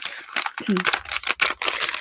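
A small plastic packet being handled and opened by hand: quick crinkling and clicking, with a brief hum from a voice about two-thirds of a second in.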